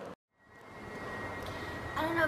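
A brief dead silence at an edit, then steady background room noise fading in, with a thin high whine held on top.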